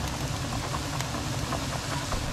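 Kitchen extractor fan running, a steady low hum with an even hiss over it.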